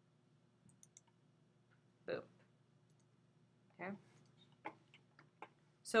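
A few computer mouse clicks and small knocks at irregular intervals, the loudest about two seconds in and three sharp ticks near the end, over a faint steady low hum.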